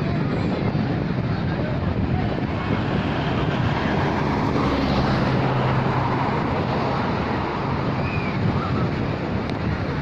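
Ocean surf breaking on a sandy beach in a steady wash, mixed with wind buffeting the microphone and a background murmur of many voices. A low engine hum comes and goes around the middle.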